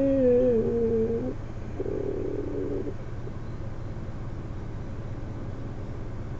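A woman humming with her mouth closed: a drawn-out "mmm" that slides a little lower in pitch and stops about a second in, then a second, shorter hum about two seconds in. A steady low background hum runs underneath.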